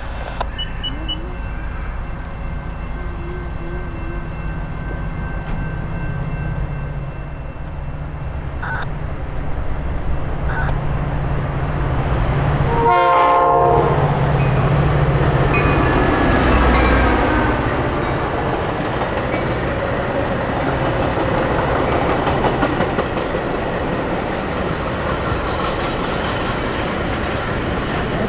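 EMD F40PHM-2 diesel locomotive approaching with its engine running steadily, sounding one short horn blast about halfway through. Then bilevel passenger cars roll past with rising rail and wheel noise.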